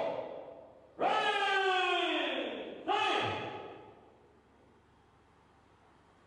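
A man's voice over a microphone calling out twice, first a long drawn-out call falling in pitch, then a short one, echoing in a large hall.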